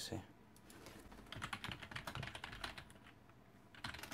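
Faint typing on a computer keyboard: a quick run of keystrokes lasting about two seconds, as a file name is typed in.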